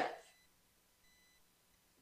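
Near silence after a spoken word trails off, with a faint steady high-pitched tone in the background.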